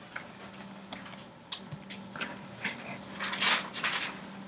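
Quiet room with a low steady hum and scattered faint clicks and rustles, a little busier near the end.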